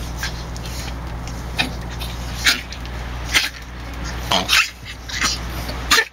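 Dogs whining in short, sharp bursts, about seven times, as they wait for treats, over a steady low hum.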